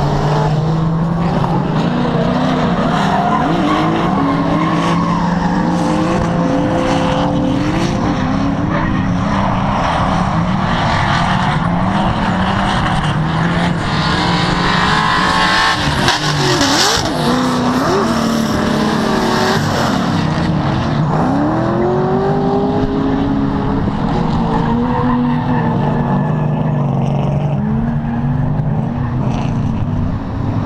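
Drift cars' engines revving up and down over and over as they slide through the course, with tyres squealing and skidding, loudest about halfway through.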